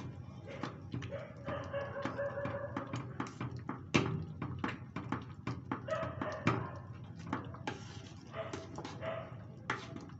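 Metal spoon clinking and scraping against a stainless steel pan while stirring thick kheer, giving many sharp clicks with the loudest about four seconds in. A pitched call sounds in the background three or four times, each lasting about a second.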